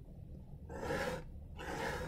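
A person breathing audibly close to the microphone: two breaths about a second apart, each lasting about half a second.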